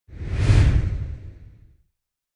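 A whoosh sound effect with a deep rumble beneath it, played as the logo intro sting. It swells quickly and fades away over about a second and a half.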